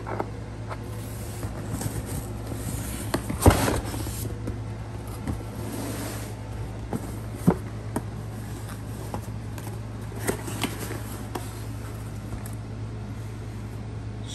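Cardboard box being handled and opened, with scattered knocks and rustling of packing paper over a steady low hum. The loudest is a thump with a rustle about three and a half seconds in, and a sharp knock follows about halfway through.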